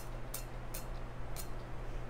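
A small pump spray bottle spritzing into a metal cocktail shaker: a quick run of about four short, sharp puffs in under two seconds.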